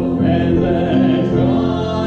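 A man singing a hymn with piano accompaniment, in long held notes.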